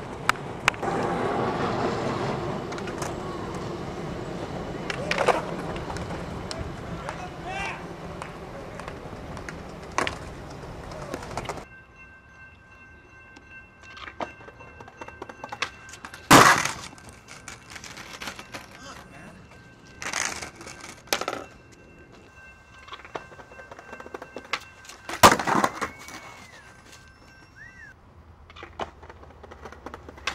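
Bustle of a crowd walking and talking for the first ten seconds or so, then a skateboard on concrete: three loud cracks a few seconds apart as the board and skater hit the ground in a fall, with a faint steady high whine between them.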